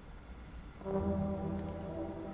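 Trombone entering a little under a second in with one long sustained note, over a faint low hum.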